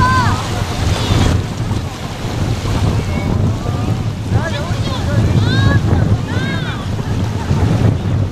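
Wind buffeting the microphone in a loud, uneven low rumble, with a few short high chirps above it near the start and again from about halfway through.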